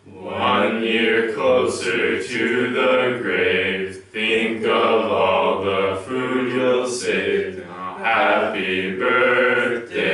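A small group of men and women singing together a cappella, with a short break between phrases about four seconds in.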